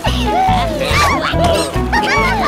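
Upbeat cartoon background music with a steady bass pulse. Over it come high, squeaky wordless cries from the cartoon characters, sliding up and down in pitch.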